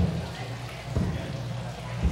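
Low thumps about a second apart from a handheld camcorder being moved and handled, over a steady low hum and a faint murmur of background voices, all heavy in the bass from a boosted low-quality microphone.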